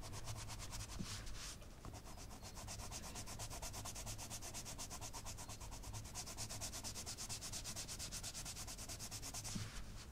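Coloured pencil (Arteza Professional) rubbing on coloring-book paper in quick, even back-and-forth strokes, faint, as a background is shaded in layers with the pressure slowly increasing.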